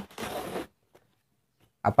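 A long cardboard box scraping briefly across a wooden tabletop as it is pulled and lifted, a half-second rasp.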